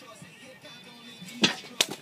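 Two sharp slaps about a third of a second apart: a hand smacking food into a seated man's face.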